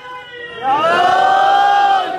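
A man's voice over a PA holding one long, loud, high drawn-out note. It slides up into the note about half a second in, holds it steady, and then falls away in pitch at the very end.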